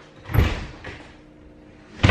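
A few dull thumps and knocks: one about half a second in, a lighter one shortly after, and a louder one at the very end just before the sound cuts off.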